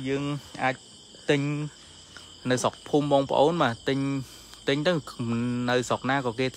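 A man speaking in short phrases, over a steady high chirring of insects.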